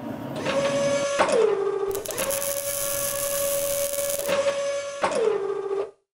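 A mechanical whine with a steady pitch. It sinks to a lower pitch just after a second in and again near the end, with a hissing rush over it in the middle, then stops abruptly.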